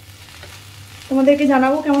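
Vegetable biryani stirred with a spatula in a wok on the stove, a faint sizzle and scrape. A woman's voice comes in about a second in and is louder.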